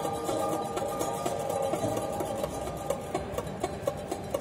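Mandolin-family ensemble of classical mandolin, mandola contralto and liuto cantabile playing softly. Held notes ring and fade while quiet, evenly spaced plucked notes keep a steady pulse.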